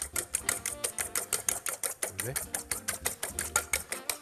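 A fork beating eggs in a stainless steel bowl, the tines clicking against the metal in a quick, even rhythm of about six strokes a second.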